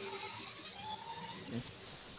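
Insects chirping, high-pitched and steady, strongest in the first second.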